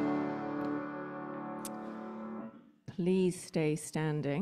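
Worship band's last chord ringing out and fading away over about two and a half seconds. After a brief pause, a voice starts speaking.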